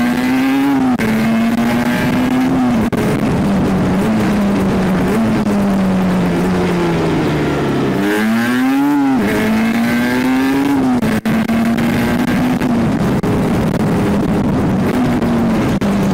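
Two-stroke Aprilia sport motorcycle engine heard from the rider's seat under wind noise, its revs rising and falling through the ride. The note sags slowly for a few seconds, then about eight seconds in it drops low and revs up sharply before settling again.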